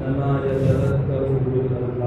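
A man's voice chanting a religious recitation in long, drawn-out held notes.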